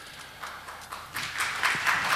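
Scattered hand clapping from the audience, a few claps at first that grow quicker and louder.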